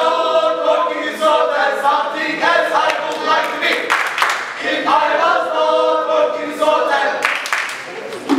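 A group of voices singing together in unison, with little or no instrumental backing, in phrases of a few seconds separated by brief breaks.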